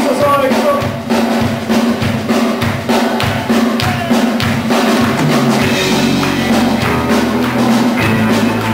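Live rock band playing an instrumental passage: a drum kit keeps a steady beat of about two strokes a second over guitar and electric bass. Sustained low bass notes come in about five seconds in.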